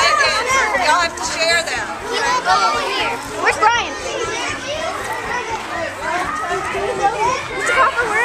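A group of children talking and calling out over one another, many high voices at once with no single clear speaker.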